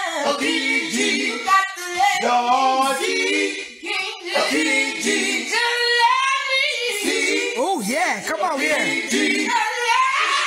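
Several voices singing a cappella in close harmony, the parts moving together in sung phrases. Near the end one voice wavers and slides up and down in a vocal run.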